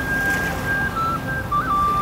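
A clear whistle-like tune: one long high note held for about a second, then a few shorter, lower notes. Small waves wash on a sandy beach underneath.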